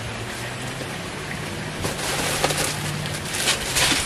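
Plastic bags of LEGO pieces crinkling and rustling as they are pulled from an opened cardboard set box, the crackle getting louder and busier from about halfway through.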